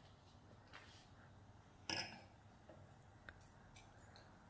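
Sparkling rosé being poured from a bottle into a glass, faint, with one short knock about two seconds in and a small tick a little after three seconds.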